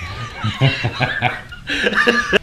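A man laughing: a quick run of short chuckles, about five a second, trailing into speech near the end.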